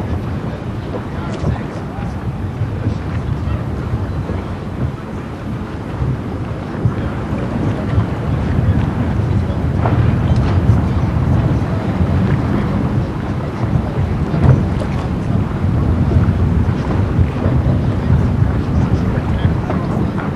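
Wind buffeting the microphone over open sea, with a steady low rumble beneath it, a little louder in the second half.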